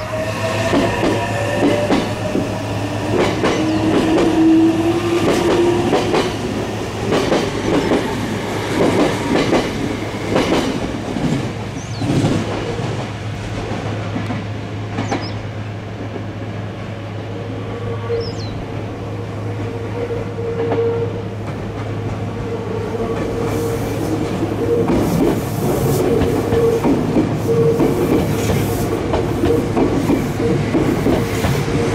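Meitetsu 2000 series μSKY electric trains running slowly through the station throat, their wheels clattering over rail joints and points. A gliding squeal comes in the first few seconds, and a long wavering squeal runs through the second half as a train comes close and passes.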